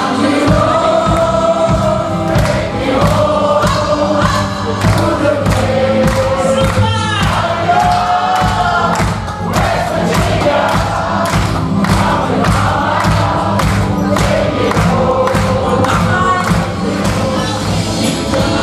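Live country band playing a song: several voices singing over drums, bass and guitars, with a steady drum beat.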